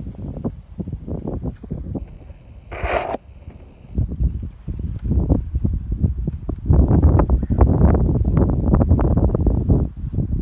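Wind buffeting the microphone in uneven gusts, much stronger in the second half. There is a brief higher-pitched sound about three seconds in.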